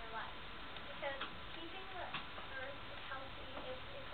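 A girl's voice reading aloud, faint and hard to make out under noise from the camcorder, with a few light ticks.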